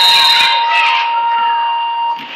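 Gym scoreboard buzzer sounding one long, steady tone as the game clock runs out.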